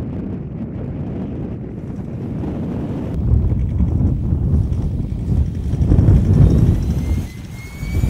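Ford Ranger pickup driving through snow, its engine and tyres mixed with wind buffeting the microphone. The rumble grows louder about three seconds in and eases off near the end.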